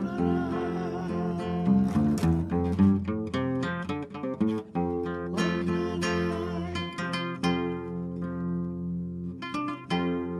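Acoustic guitar music: plucked and strummed notes that ring on, with fresh runs of notes about five seconds in and again near the end.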